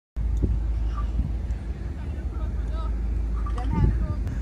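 Faint voices talking over a steady low rumble.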